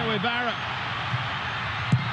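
Steady noise of a football stadium crowd on a TV broadcast, with a commentator's voice briefly at the start. A single sharp knock comes near the end: the ball being struck.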